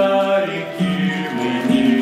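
Men singing a song together, several voices holding notes at the same time and moving from note to note.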